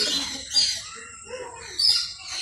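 Caged parakeets giving short, high-pitched calls: one at the start and another near the end, with a fainter call about half a second in.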